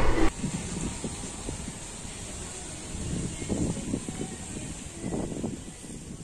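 Outdoor ambience of a resort water park: faint, distant voices of people and a low background rumble under a steady high-pitched hiss.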